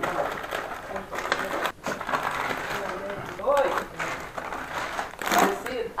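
Thin plastic grocery bags rustling and crinkling as they are handled and unpacked, with a louder rustle about five seconds in.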